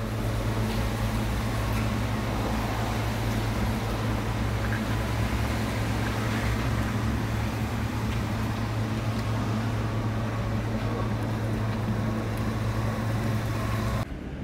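A steady low mechanical hum under a constant outdoor background noise, with no clear events.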